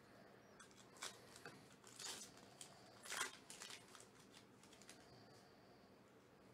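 Faint crinkling and tearing of a Panini Diamond Kings trading-card pack's wrapper being ripped open by hand, a run of short rips and rustles with the loudest a little after three seconds.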